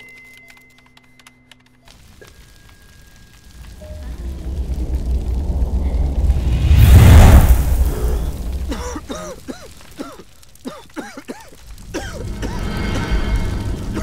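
Dramatic film score and sound effects: a low rumble builds to a loud boom about halfway through, followed by swirling, sliding electronic tones and another low rumbling swell near the end.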